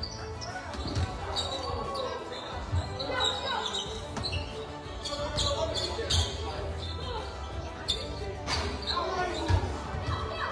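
A basketball bouncing on a wooden gym floor during play, single thuds a few seconds apart, under players and onlookers calling out in a large hall.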